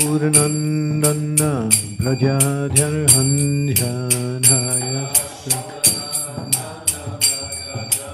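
A man chanting a devotional mantra in long held notes, with small hand cymbals (karatalas) struck in a steady beat about three times a second. The voice stops about five seconds in and the cymbals keep going.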